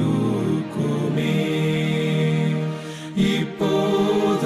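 A Tamil Christian devotional song: singing in long held notes over a soft musical backing, with a short dip about three seconds in before the next line begins.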